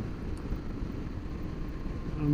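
Steady low rumble of a Honda Varadero 1000 motorcycle under way, mostly wind noise on the helmet-mounted microphone, with no distinct engine note standing out.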